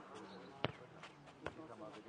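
A football struck by a foot and bouncing on a clay court: two sharp thuds under a second apart, the first the louder, with voices talking behind.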